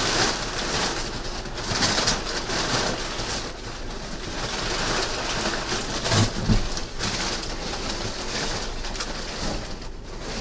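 Cardboard box being handled right against the microphone: uneven scraping and rustling of cardboard that swells and fades, with a couple of dull thumps about six seconds in.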